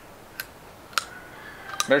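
A child biting and chewing a raw, freshly pulled carrot: three sharp crunches spread across two seconds, with a man's voice coming in at the very end.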